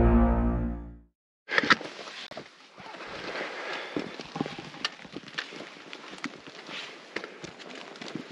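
Background music fading out in the first second, then after a brief gap irregular footsteps with scattered sharp clicks and knocks, as of someone walking over rough mountain ground.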